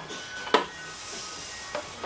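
Hands working a tight-fitting plastic RC car body off its chassis: a sharp click about half a second in, then about a second of rubbing hiss, and a fainter click near the end.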